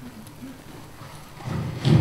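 Low room noise, then a voice speaking loudly near the end.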